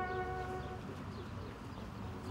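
A held brass chord fades out within the first second, leaving a quiet outdoor hush with a low rumble and faint, brief bird chirps.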